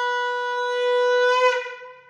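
Conch shell (shankh) blown in one long, steady note during a Hindu puja. The note swells a little about a second and a half in, then fades out near the end.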